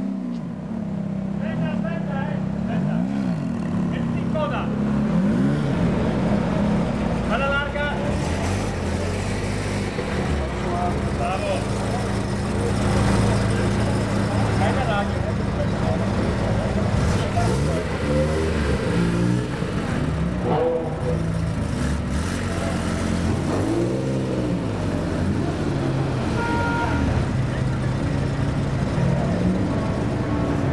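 Ferrari V8 sports car engines running at low speed as the cars roll past one after another, the engine note rising and falling a few times in the second half. People talk in the background.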